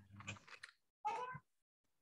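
A faint, short, high-pitched cry about a second in, lasting under half a second, after a brief low murmur.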